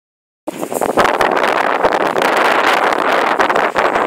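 Loud, steady scraping rush of a heavy draft sled's runners dragging over the ground while a team of Haflinger horses pulls it, with wind buffeting the microphone. It starts abruptly about half a second in.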